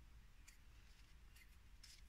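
Near silence with a few faint, light ticks and rustles of small cardboard being handled in the fingers.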